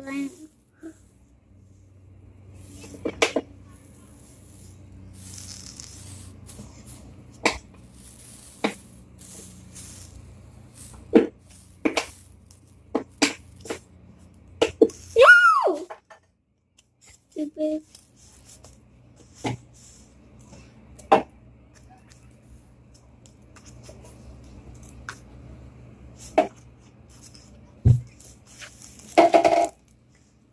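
Slime being poked, pressed and squeezed by hand, giving irregular sharp clicks and pops over a faint steady low hum. A short vocal exclamation comes about halfway through.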